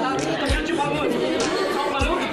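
Several voices talking over one another, children and adults chattering in a large, echoing room.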